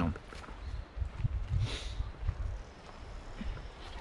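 Wind rumbling on the microphone, with irregular low thuds of footsteps along a woodland track. A short, brighter rustling noise comes about halfway through.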